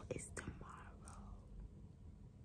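A faint breathy whisper or exhale from a person close to the phone's microphone, about half a second in, just after a couple of small clicks; low room hum underneath.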